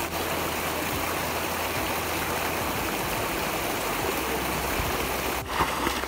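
Shallow creek water running steadily over rocks, with a brief break near the end.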